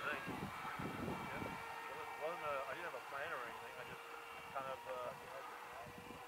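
Electric motor and propeller of a Flite Test Scout foam-board RC plane flying overhead: a steady, faint whine whose pitch drops slightly about half a second in. Faint voices murmur underneath.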